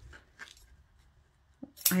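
A few faint, separate snips and clicks of large metal scissors cutting through ribbon.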